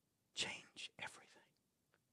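A man whispering a word, starting about a third of a second in.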